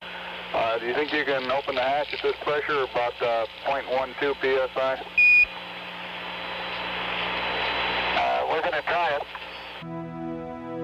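Voices heard over a radio link with a steady static hiss and hum, in short bursts of talk. They are broken by one brief high beep about five seconds in, and a last burst of talk comes near the end.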